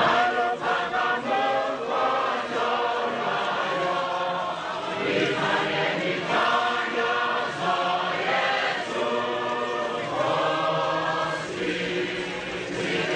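Many voices singing together in a chant-like choral song, phrase after phrase without a break.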